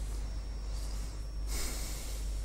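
A short breath through the nose close to the microphone, about one and a half seconds in, over a steady low hum.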